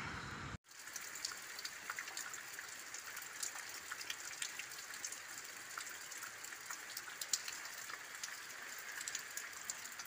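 Light rain falling, with many small drops ticking close by. The sound cuts out for a moment about half a second in, then the rain carries on evenly.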